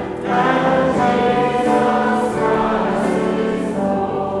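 Trombone and piano playing a hymn tune, with a group of voices singing along in sustained phrases; a short break between phrases falls right at the start.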